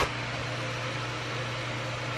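Steady hum and airflow of an electric fan running in a small room.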